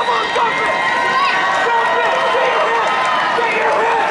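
Crowd noise in a large indoor arena: many voices talking and calling out at once, steady throughout, with no single voice standing out.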